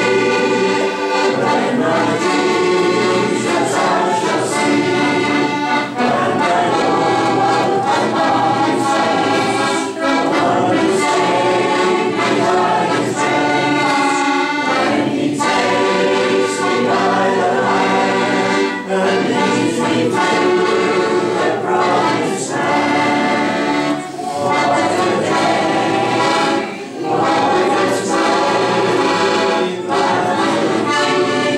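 A congregation of men and women singing a hymn chorus together to a piano accordion accompaniment, with short breaks between the phrases.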